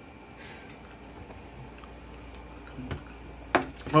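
A person chewing a mouthful of soft, saucy chili and hot dog, with faint wet mouth sounds. A single sharp click comes about three and a half seconds in.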